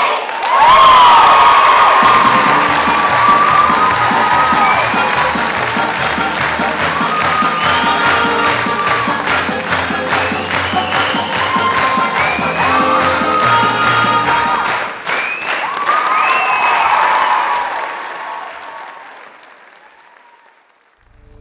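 Theatre audience applauding and cheering over loud music, fading out over the last few seconds.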